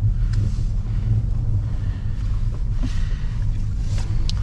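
Opel Insignia cabin noise while driving slowly over a snowy road: a steady low rumble of engine and tyres.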